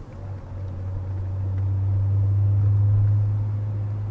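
Low, steady hum of a car's engine and road noise heard from inside the cabin, growing louder over the first three seconds.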